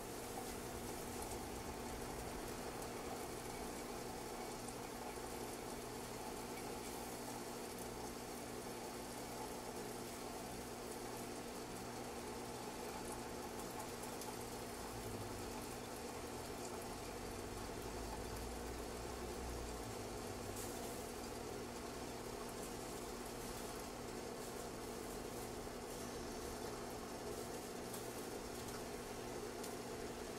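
Water heating in a kettle for hand-drip coffee: a steady hiss with a low hum, not yet at the boil.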